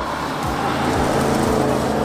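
Audi RS6 Avant Performance's twin-turbo V8 driving past on a wet road: a steady engine note under a loud hiss of tyres on wet tarmac, swelling slightly as the car goes by.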